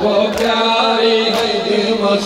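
A boy chanting a noha lament into a microphone over a PA system. Sharp strikes about once a second, two here, are typical of the crowd beating their chests (matam) together in time with the recitation.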